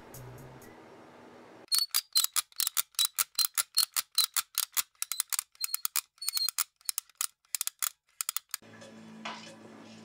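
A fast, irregular run of sharp clicks, about six a second, starting about two seconds in and stopping a little before the end.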